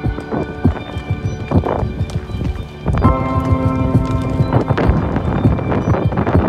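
Horse hooves knocking irregularly on a stony trail, mixed with background music whose sustained notes swell again about halfway through.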